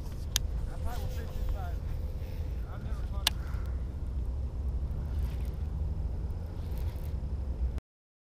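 Steady low outdoor rumble with a faint distant voice and two sharp clicks, one about half a second in and one about three seconds in. The sound cuts off abruptly to silence near the end.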